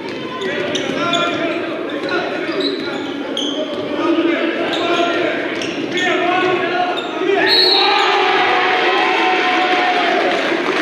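A basketball bouncing on a hardwood gym floor during play, mixed with voices in a large, echoing gym.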